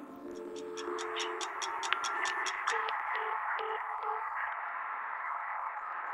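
Closing effects of the karaoke backing track as its music fades out: a run of quick, even ticks, then four short low beeps, then a steady static-like hiss.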